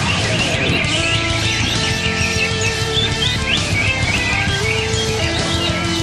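Many caged cucak hijau (greater green leafbirds) chirping and singing together in quick, rising and falling phrases, over background music with long held notes.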